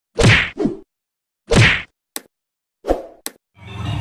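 Logo-intro sound effects: a quick double hit, another hit about a second later, then a few short sharp clicks, with music swelling in just before the end.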